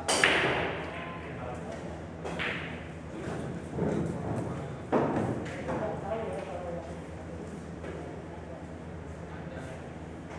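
Pool shot: a sharp crack of the cue tip on the cue ball and the balls clacking together right at the start, the loudest sound, with a short ringing tail in the hall. Several more billiard-ball knocks follow about 2.5, 4 and 5 seconds in.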